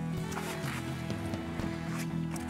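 Background music: sustained tones over a light, steady beat.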